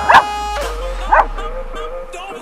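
A small dog barking twice: two short, high yips about a second apart.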